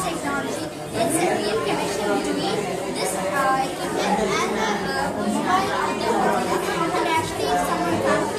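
Many voices chattering at once, none of them clear enough to make out.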